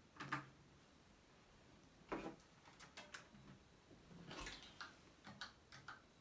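Scattered clicks and knocks of handling as a small powered speaker is plugged in and set in place, followed by a few quick keystrokes on the Commodore PET 2001's keyboard near the end.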